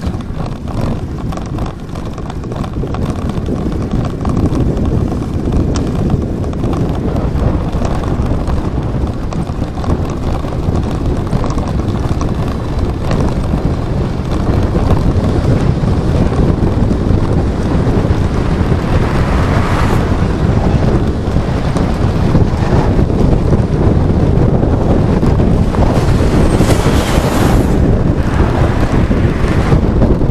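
Wind buffeting the microphone of a camera on a moving bike: a steady low rumble that grows louder as the speed picks up. A brighter hiss swells briefly about two-thirds of the way in and again near the end.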